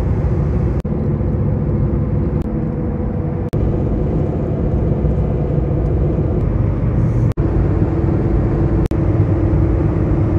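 Steady low road and engine drone inside a hatchback's cabin while it cruises at highway speed, broken by a few very brief dropouts where clips are joined.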